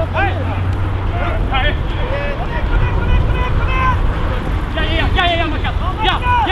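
Football players calling and shouting to each other across the pitch during play, in short scattered calls over a steady low rumble.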